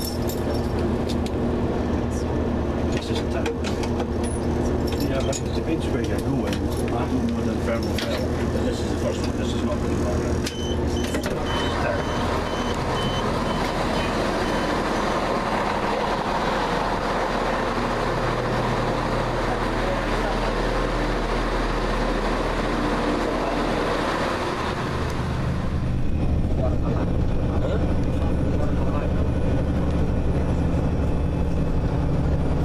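Running noise of a train heard from inside the carriage. About ten seconds in it turns into a louder, steady rush as the train runs alongside a platform, with a short, repeated high beeping for a few seconds. Near the end, after a cut, there is the steady engine hum of a bus heard from inside it.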